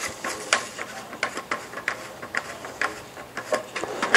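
Plastic base nut on a ceramic toilet cistern's flush mechanism being spun off its thread by hand, giving a run of light, irregular clicks and ticks.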